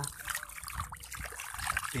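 A hand sloshing and splashing in shallow muddy water on a rice seedbed, a string of small irregular wet sounds as mud slurry is mixed to cover broadcast rice seed.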